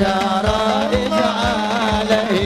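A man singing an Arabic devotional qasidah through a microphone and PA, a winding, ornamented vocal line over a steady low held tone and a drum beat about twice a second.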